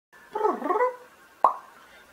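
Edited intro sound effect: a quick half-second flurry of warbling, gliding tones, then a single sharp plop with a short falling pitch about one and a half seconds in.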